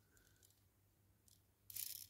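Near silence, then a brief faint high rasp near the end from a toy car's pullback motor, its small plastic gears spinning for a moment as the wheels are turned to test it.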